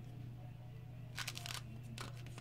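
Quiet room with a steady low hum and a few faint, short rustles of something being handled, about a second in.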